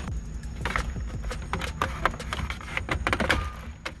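Plastic dash trim panel being pried loose with a plastic panel removal tool: a run of sharp clicks and snaps as the retaining clips along its side let go, over a low steady rumble.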